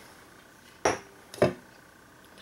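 Two sharp knocks about half a second apart from a plastic tub of freshly poured, thick homemade soap being knocked against a wooden table, to settle it and drive out trapped air bubbles.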